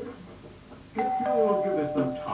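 Two-note doorbell chime about halfway through. A higher note sounds first and a lower note follows a quarter second later, and both ring on.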